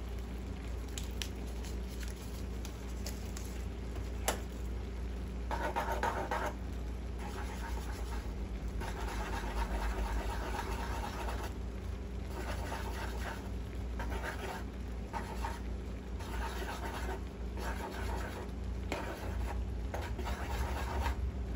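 A plastic spatula stirring and scraping noodles and vegetables in a nonstick frying pan, in irregular strokes that start about five seconds in. A few light ticks come before the strokes, and a low steady hum runs underneath.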